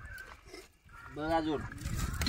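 A single drawn-out animal call about a second in, rising then falling in pitch.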